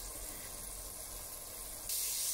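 Onions and spices frying in oil in a stainless-steel pot: a steady sizzle that grows louder near the end as stirring starts.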